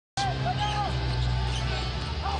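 A basketball being dribbled on a hardwood arena court, with crowd noise and arena music under it.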